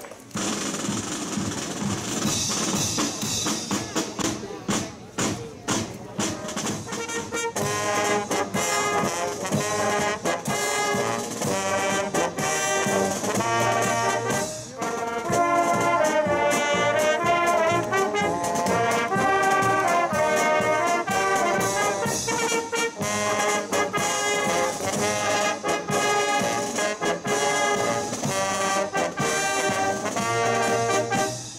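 Fanfare band of brass instruments, saxophones and snare drum playing a march-like piece. The wind instruments' tune comes in clearly about seven seconds in.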